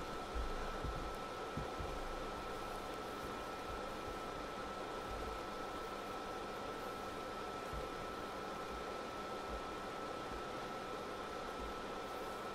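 Steady background hiss with a faint, thin high tone held throughout, and a few soft low bumps; no speech.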